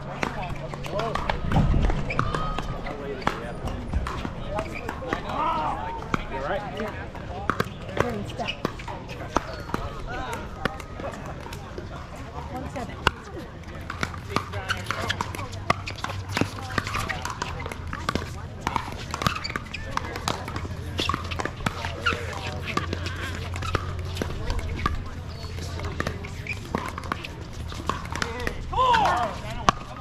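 Pickleball paddles hitting the plastic ball in rallies: sharp pops, often about a second apart, over people talking in the background.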